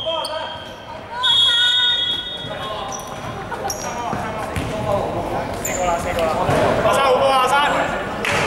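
Referee's whistle blown about a second in and held for roughly a second and a half, followed by several people calling out and a basketball bouncing on the hall floor, all echoing in the large gym.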